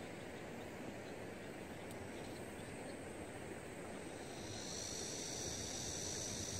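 Faint, steady outdoor river-valley background hiss. About two-thirds of the way in, a steady high-pitched insect buzz sets in and keeps going.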